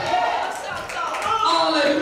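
A woman preaching into a microphone over the church PA.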